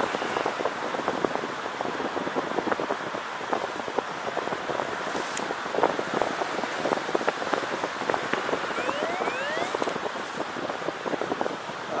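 Airflow rushing past a paraglider in flight, with the fabric of the pilot's pod harness fluttering and crackling in the wind as a dense, irregular patter. A few faint rising chirps come in about nine seconds in.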